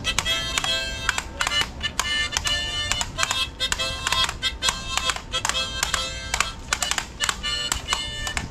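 Harmonica playing a quick, rhythmic tune of short chords and held notes.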